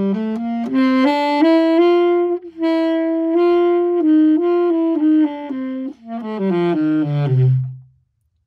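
Tenor saxophone playing a warm-up: notes step up from the low register and are held, with brief breaks about two and a half seconds in and again near six seconds, then a run steps down to a low note that stops just before the end.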